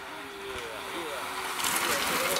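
Racing bicycles passing close by, with a rush of tyre and wind noise building near the end. Spectators talk in the background.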